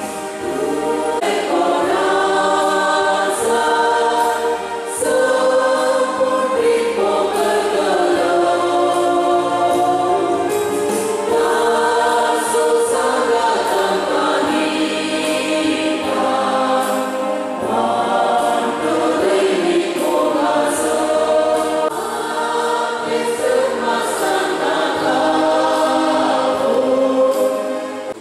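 Church choir singing a hymn over steady low accompanying notes, stopping at the end.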